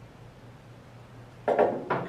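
Faint room hum, then about a second and a half in a short clatter of two knocks as the hinged plastic cover of a Fibox IPW instrument protection window is shut onto its frame and a metal ratchet is set down on a wooden workbench.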